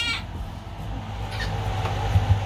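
Steady low hum of the ship's cabin ventilation, with a faint brief sound about a second and a half in.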